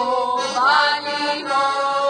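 Heligonka, a Slovak diatonic button accordion, playing folk music with held chords, and a singing voice over it that slides up in pitch just over half a second in.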